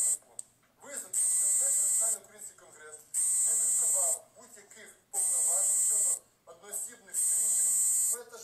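A loud, high-pitched electronic buzz pulsing on and off at an even pace, about one second on and one second off. It sounds four times, and faint speech is heard in the gaps.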